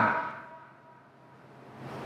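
A pause in a man's speech. The last word's echo in the room dies away over about half a second, leaving faint room tone with a thin steady hum.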